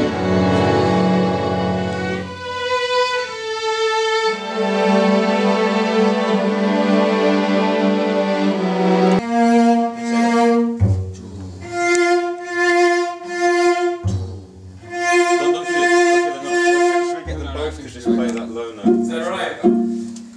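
A string section of violins, violas and cellos playing an orchestral arrangement: held chords that change a couple of times, then from about halfway short repeated notes in a pulsing pattern.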